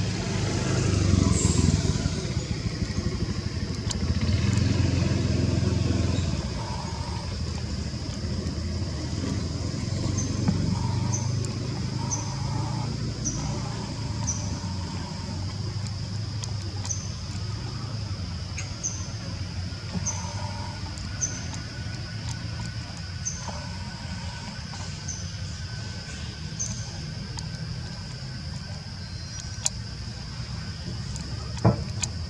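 Outdoor ambience: a steady low rumble, louder for the first few seconds, under a constant high-pitched whine. From about ten seconds in, short high chirps repeat roughly once a second.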